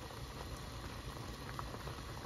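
Pot of instant noodle broth boiling, bubbling steadily, with a few small bubble pops near the end.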